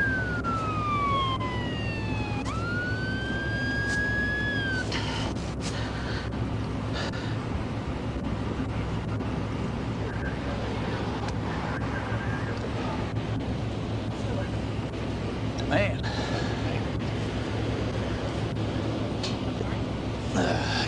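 Police car siren sweeping down in pitch, back up and holding, then cut off about five seconds in, leaving a steady low hum. A single sharp knock comes near the end.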